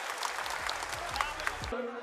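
Hand clapping, a dense run of applause that cuts off abruptly shortly before the end.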